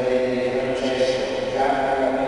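A priest chanting part of the Mass in a man's voice, holding long notes and moving stepwise between a few pitches.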